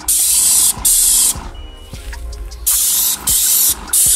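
Paint sprayer hissing as it sprays house paint onto a wall. The spray comes in bursts of about half a second, stopping and starting, with a longer pause in the middle.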